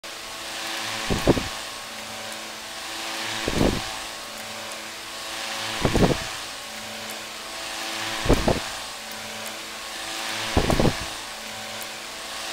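Antique electric desk fan running with a steady motor hum and rushing air. About every two and a half seconds a gust of air buffets the microphone as the fan swings round to face it, five times in all.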